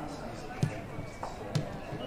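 A football being kicked on a grass pitch: two sharp thuds about a second apart.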